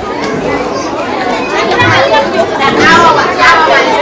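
A crowd of young children talking and calling out over one another, their high voices overlapping, growing louder after the first second or two.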